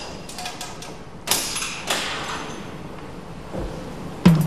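Workshop knocks and clanks of metal being handled, ringing on in a large echoing hall. There are a few light knocks at first, then a loud knock about a second and a quarter in and another soon after.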